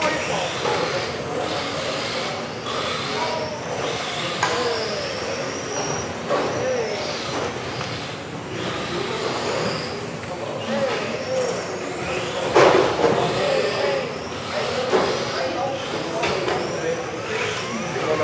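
Several electric RC touring cars racing, their motors whining up and down in pitch as they accelerate and brake. A single sharp knock comes about twelve and a half seconds in.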